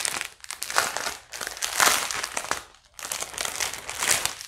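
Clear plastic packaging crinkling in the hands: a packet of small bagged diamond-painting drills is handled in irregular rustling bursts, with a brief lull about three-quarters of the way through.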